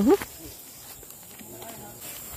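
A short rising vocal sound from a person right at the start, then quiet outdoor background with a faint, distant voice near the end.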